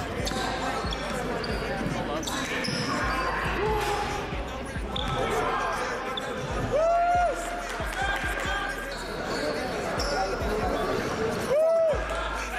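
A basketball bouncing on a hardwood gym floor during play, with voices in the echoing gym. Two short squeaks, one about seven seconds in and one just before the end, are typical of sneakers on the court.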